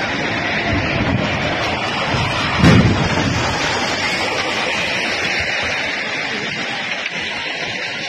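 Under-construction cable-stayed concrete-and-steel bridge collapsing into a river: a dense, steady rushing roar with one deep rumble about two and a half seconds in.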